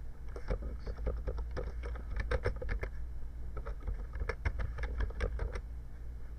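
Typing on a computer keyboard: a quick run of key clicks with a short pause about three seconds in, ending shortly before the end, over a low steady hum.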